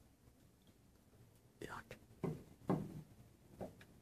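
Quiet whispered voices: a few short whispered words in the second half.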